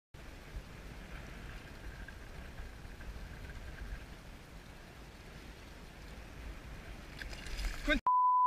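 Faint, muffled rumble of sea water moving around a camera held at the water's surface, with wind on the microphone. It swells briefly just before the end.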